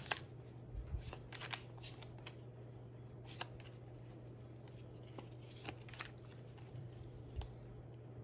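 A stack of thin photo cards being leafed through by hand: scattered crisp paper flicks and slides, closer together in the first couple of seconds and sparser after, over a low steady hum.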